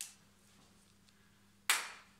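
A faint click at the start, then a single sharp hand clap near the end.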